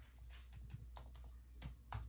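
Computer keyboard keys being typed: faint, irregular keystroke clicks, about four a second, with the loudest two near the end, as a password is entered.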